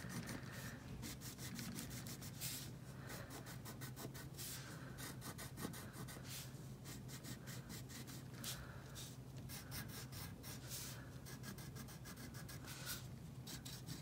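Crayon rubbed in short, quick strokes across paper, a faint, irregular scratching, over a steady low hum.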